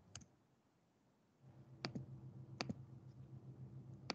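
Faint, sharp clicks of a computer mouse, three times, each with a quick second tick, as the slideshow is advanced. A low steady hum comes in about a second and a half in.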